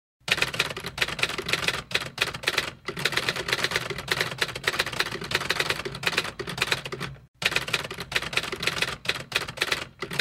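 Typewriter keys clattering in a fast, continuous run of clicks, as a typing sound effect. It breaks off briefly near 3 s and again about 7 s in, between typed lines.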